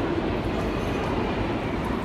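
Steady, loud noise of a subway train running through the station.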